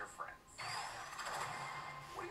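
Film trailer soundtrack: a brief drop-out, then a sudden sound-effect hit about half a second in, with a thin rising whine over a dense rush of effects.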